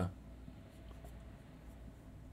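Faint marker strokes of a dry-erase marker writing on a whiteboard.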